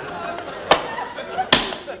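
Two sharp knocks of tableware on a table, a small one and then a louder one that rings briefly.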